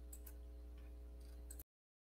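Faint steady electrical hum with a few soft clicks, then the sound cuts off abruptly about one and a half seconds in as the recording ends.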